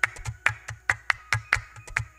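Hand claps in a quick, layered, syncopated rhythm, with soft low thumps beneath them, building up a percussion loop. The claps keep going after the hands stop clapping, so they are being repeated by a looper.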